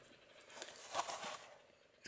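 Faint handling noise of a plastic blister pack on a cardboard backing card: soft crinkling and small ticks as the packaged die-cast car is turned over in the hand, dying away about a second and a half in.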